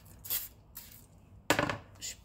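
A plastic mixing bowl set down on a kitchen counter with a sharp knock about one and a half seconds in, preceded by a brief hiss near the start.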